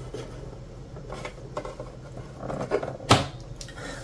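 Handling noise from hands pushing and pulling jammed TPU filament through the plastic feeder parts of an opened Anycubic ACE Pro: light rubbing and small clicks, with one sharper click about three seconds in, as the tangled filament is worked loose.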